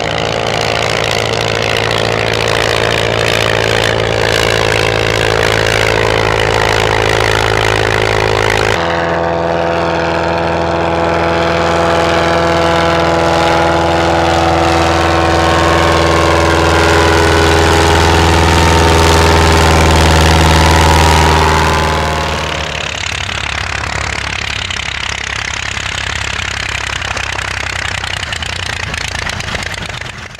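Engine and propeller of a vintage pusher biplane in flight, a steady droning note. The sound changes abruptly about nine seconds in to another steady engine note, which grows slightly louder and then drops away after about twenty-two seconds to a quieter, rougher engine sound.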